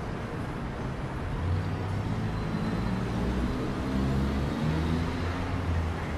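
Steady traffic noise from a busy city road, with the low hum of passing vehicle engines swelling around the middle and again near the end.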